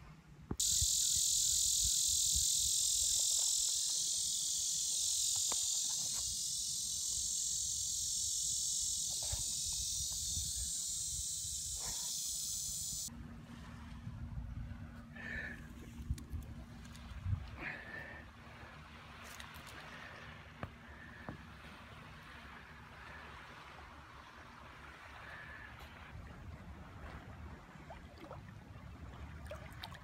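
A steady, loud, high-pitched chorus of buzzing insects that cuts off suddenly about halfway through. After it the sound is much quieter, with only faint scattered knocks and rustles.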